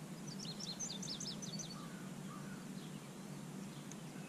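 A bird calling a quick run of about eight short, high chirps in the first half, over steady outdoor background noise and a low steady hum.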